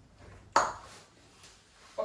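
A single sharp click with a short ringing tail about half a second in, from the blazer's front fastening being done up by hand.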